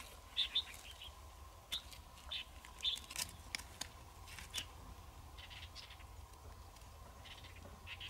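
Small birds chirping in short, scattered calls, with a few sharp clicks of a freshwater mussel shell being handled on gravel around the middle.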